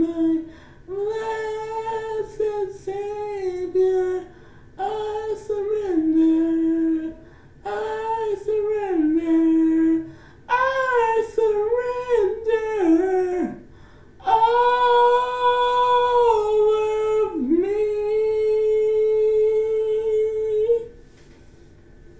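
A woman singing solo and unaccompanied, a slow gospel melody in short phrases, finishing on one long held note that stops about a second before the end.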